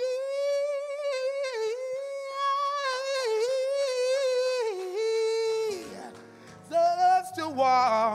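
Solo singer singing into a microphone, holding one long high note for about five and a half seconds. Near the end, over soft low sustained accompaniment, comes a short phrase and a note with a wide vibrato.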